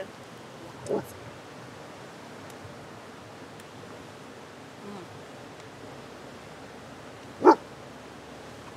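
A dog barks once, short and loud, near the end, with a fainter short sound about a second in, over a steady background hiss.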